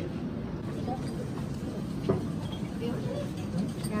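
Low background chatter of several people at a table over a steady low rumble, with one short click about two seconds in.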